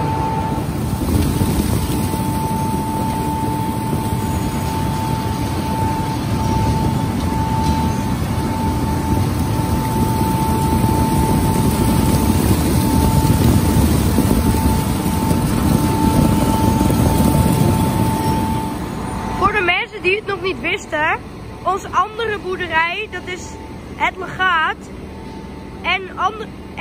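Onion-handling machinery running: conveyor belts carrying onions onto the storage pile, a steady mechanical rumble with a constant whine. It cuts off sharply about 19 seconds in, leaving a quieter stretch with quick chirps.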